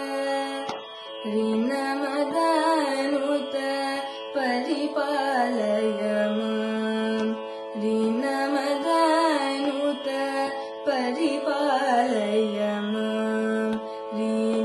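A young female voice singing a Carnatic melody in raga Behag, in phrases with gliding, ornamented pitch and short breaks between them. A steady drone holds one pitch underneath.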